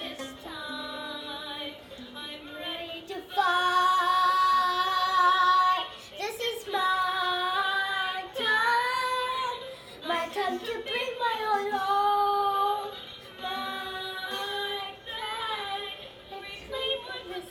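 A young girl singing a melody in long held notes. The loudest is a long high note from about three to six seconds in.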